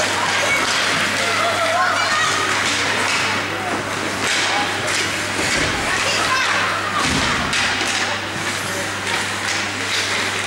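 Ice hockey rink during a youth game: voices calling and shouting across the hall, with frequent knocks and thuds of puck, sticks and boards over a steady low hum.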